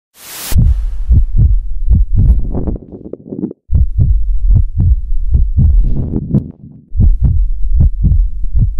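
Amplified human heartbeat: a fast, steady run of low double thumps, cut off by a brief silence about three and a half seconds in and again just before seven seconds. It opens with a short burst of hiss.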